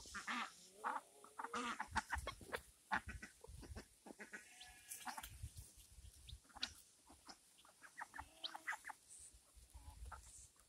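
Ducks and chickens making short, scattered calls, with footsteps and low handling thumps throughout.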